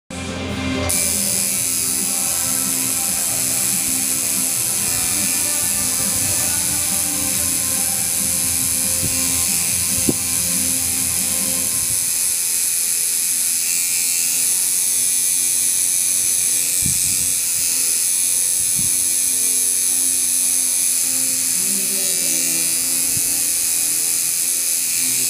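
Electric tattoo machine buzzing steadily while tattooing the skin of a forearm, with music playing in the background.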